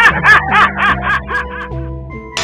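A recorded laughter sound effect, a quick run of snickering 'ha-ha' syllables that fades away about a second and a half in, over background music with steady held notes.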